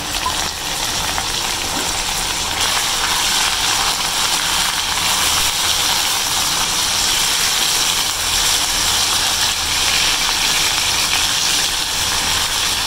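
Raw chicken pieces sizzling in hot ghee among browned onions in a frying pan as they are stirred. The sizzle builds over the first two or three seconds, then holds steady.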